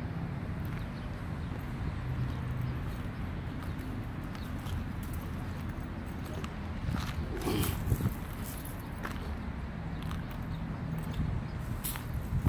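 Steady low outdoor rumble, with a few footsteps on pavement about two-thirds of the way through.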